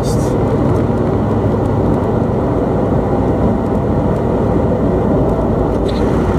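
Steady in-cabin drone of a 2013 Subaru WRX STI under way, dominated by driveline vibration carried through stiff aftermarket suspension bushings. This bushing vibration is much louder than the car's quiet Milltek cat-back exhaust. A brief hiss comes at the very start.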